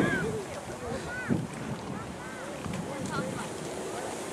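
Wind on the microphone, with scattered faint distant voices.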